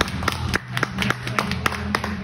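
Music playing in a large hall with a steady bass line, under sharp claps about three or four a second.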